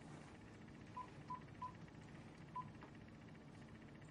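Mobile phone keypad beeping as its keys are pressed: four short beeps, three in quick succession about a second in and a fourth a second later.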